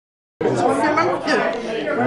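Only speech: a voice talking, starting about half a second in.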